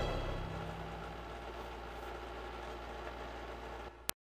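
The karaoke backing track's final chord fading out: a low, steady sustained tone that slowly grows quieter.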